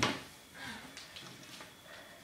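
Quiet room, with a few faint soft footsteps and light taps of someone walking in socks across a wooden floor.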